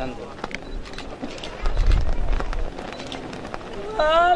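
Outdoor gathering of mourners: faint, indistinct voices and scattered small knocks and shuffles, with a low rumble on the microphone about halfway through.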